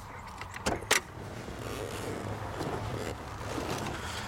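Two sharp clicks close together just under a second in, the second one louder, over a steady low hum.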